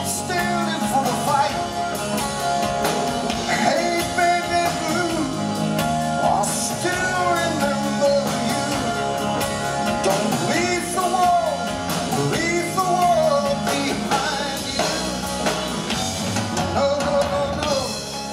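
Live hard rock band playing at full volume: drums, bass, electric guitars and keyboards, with a melodic lead line that bends in pitch above the mix.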